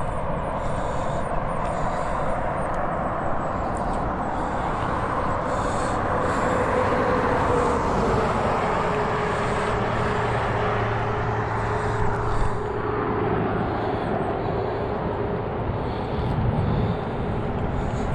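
Steady road noise from traffic on a highway, with a low engine hum coming in about ten seconds in from a car following slowly behind.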